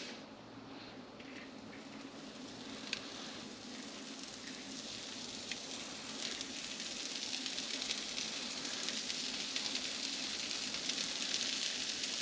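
Shredded Tuscan-blend hard cheese (Parmesan, Romano, Asiago) sizzling on the hot plates of a Dash mini waffle maker. It is a soft frying hiss that grows gradually louder as more cheese lands on the plates and starts to melt.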